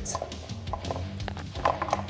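Scattered light clicks and knocks as a grinding disc is turned by hand and seated onto a concrete floor grinder's drive plate, over faint background music.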